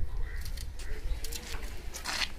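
A bird cooing faintly in a low wavering note, over a few light clicks and a low rumble.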